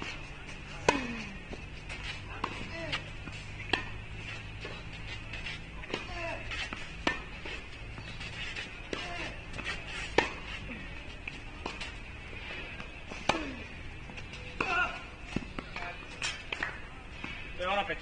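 Tennis rally: racquets strike the ball about every one and a half seconds, and every other hit is louder and is followed by a short falling grunt. Near the end comes a voice.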